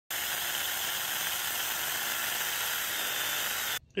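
Saker 4-inch cordless electric mini chainsaw running and cutting through a branch, a steady high hiss with a faint motor whine. It cuts off abruptly near the end.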